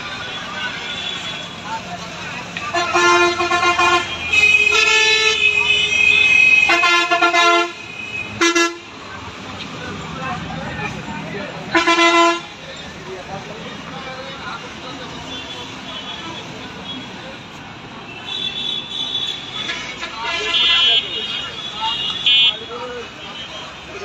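Vehicle horns honking in street traffic: a short blast, then one held about three seconds, then several shorter blasts, over steady traffic noise.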